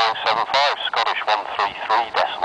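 An air traffic control radio voice heard through a handheld airband scanner's speaker, thin and tinny, in a run of short broken phrases with no words that can be made out.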